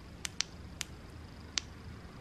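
Flashlight switches clicking: four short, sharp clicks, the last, about one and a half seconds in, the loudest.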